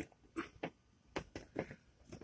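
A few faint, short clicks and taps, about five of them scattered over two seconds with quiet gaps between.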